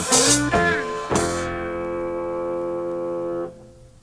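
The closing bars of a song from a 1970s vinyl album: a sung phrase ends, a final chord is struck about a second in and held, then cuts off at about three and a half seconds, leaving only faint hiss.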